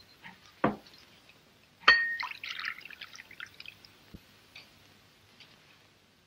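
A sharp clink of china crockery about two seconds in, followed by about a second and a half of tea pouring from a teapot. A few small knocks of crockery are heard around it.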